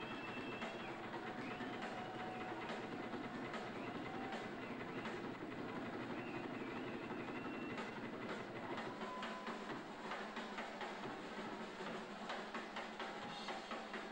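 Drum kit played live by a rock band, a dense, continuous run of drum and cymbal strikes with a few faint wavering tones above it.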